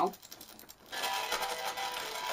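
Flyback-driven singing arc reproducing recorded music through the spark as a hissy, buzzing sound that starts about a second in. The modulation only sort of works, so the music comes through rough and distorted.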